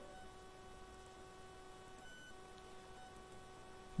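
Near silence: faint room tone with a steady, faint electrical hum or whine of several pitches, which shifts briefly about halfway through.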